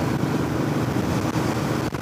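Steady wind noise on the microphone of a moving Royal Enfield Bullet, with the bike's single-cylinder engine running underneath. The sound cuts out briefly a couple of times near the end.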